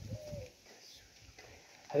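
A dove cooing faintly, one short coo near the start.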